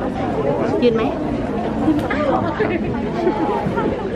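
Several people talking at once: overlapping chatter.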